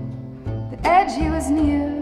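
Live acoustic music: a bowed double bass holding low notes under plucked strings, with a wordless sung line that swoops up about a second in.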